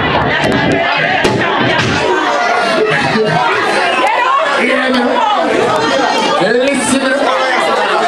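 Crowd of people talking and shouting over one another in a loud, packed room, with no clear words. The deep bass of the music drops away about a second in, leaving mostly voices.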